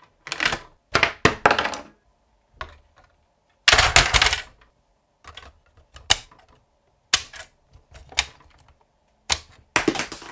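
Hard plastic toy fire-truck parts being handled and fitted together: bursts of clicks, knocks and rattles, the loudest clatter about four seconds in, then single sharper clicks every second or so.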